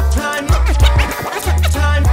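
Hip hop beat with a deep bass line and turntable scratching: quick back-and-forth pitch sweeps from about half a second in to about a second and a half, while the bass briefly drops out.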